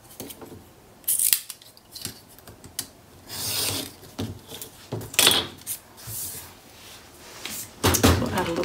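Craft knife drawn along a steel ruler, slicing through a strip of patterned paper in a few short scraping strokes, then the cut paper strip rustling as it is picked up and handled.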